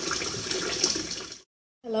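Steady rushing noise that cuts off abruptly about a second and a half in, followed by a brief dead silence.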